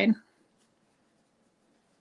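The last word of a woman's speech, then near silence with faint scratching of a pen writing on a notepad.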